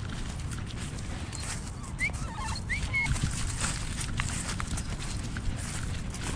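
A Staffordshire bull terrier on the move, heard from a camera strapped to its back: rhythmic pawsteps and rustling through leaf-littered grass over a steady rumble of body movement. A few short bird chirps come about two to three seconds in.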